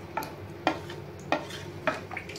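Wooden spoon stirring thick mash daal (urad lentils) in an aluminium pressure-cooker pot, with a sharp knock of the spoon against the pot about every two-thirds of a second.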